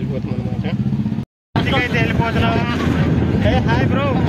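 Small goods truck's engine running with a steady low hum. After a brief cut about a second in, several voices are heard over engine rumble and wind noise from the truck's open load bed.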